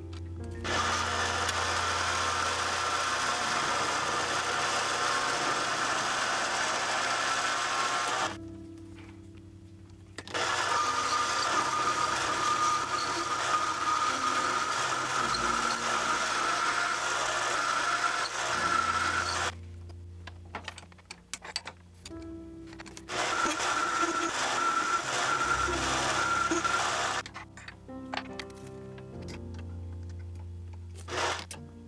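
Mini lathe turning an aluminum bar: a steady motor whine with cutting hiss in three long stretches, stopping briefly twice and again near the end. Background music plays throughout.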